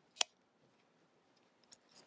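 A single sharp plastic click about a quarter-second in as the Velociraptor action figure is handled and its head joint moved, then near silence with faint handling rustle near the end.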